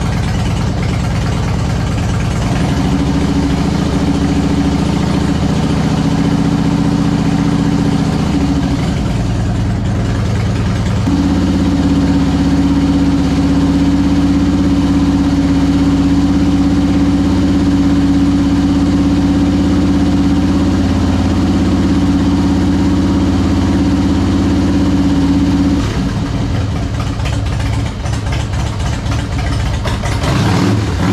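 2001 Harley-Davidson Heritage Springer's carbureted Twin Cam 88B V-twin idling, freshly rebuilt and running on choke shortly after a cold start. The idle rises and holds steady about a third of the way in, then drops back a few seconds before the end.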